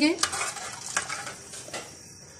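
A metal spoon stirring macaroni in a pot of hot water, with a few light clinks of the spoon against the aluminium pot. The stirring fades away toward the end.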